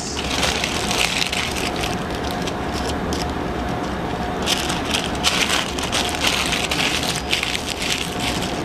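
Parchment paper crinkling and rustling as a zucchini is wrapped in it by hand, with sharper bursts of crackling near the start, around the middle and toward the end.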